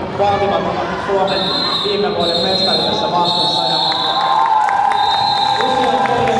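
Quad roller skates rolling and knocking on a hard sports-hall floor during roller derby play, under shouting voices and crowd noise. A high held tone joins about a second in.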